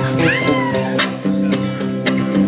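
An electric guitar and an acoustic guitar play together, with a sharp strum about a second in. A short, high, gliding voice-like sound rises and falls near the start.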